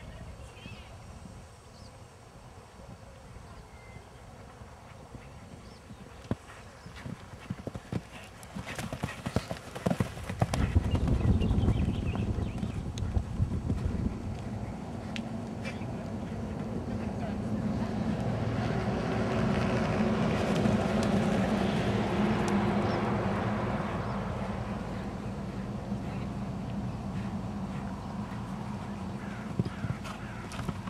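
Horse cantering on a sand arena, its hoofbeats a run of dull strikes that grow loudest as it passes close, about ten to thirteen seconds in.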